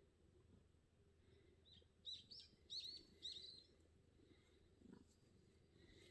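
A small bird chirping: a quick run of about five short, high chirps between two and three and a half seconds in, against otherwise quiet surroundings.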